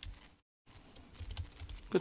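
Typing on a computer keyboard: a run of soft keystrokes, mostly in the second half, as a folder is being created and named.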